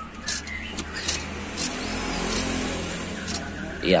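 Car engine idling steadily with a low hum, with a few light clicks as the wiring connectors on top of it are handled.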